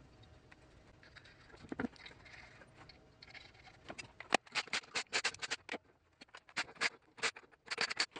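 Lug nuts being run onto the wheel studs of a steel wheel with a hand tool: a run of quick, irregular small metal clicks and taps, starting about halfway through.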